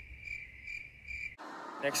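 Crickets chirping as an 'awkward silence' comedy sound effect: a steady high trill pulsing about three times a second. It cuts off abruptly about a second and a half in, leaving faint room noise.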